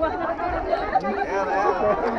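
People chatting; speech only, with no other distinct sound.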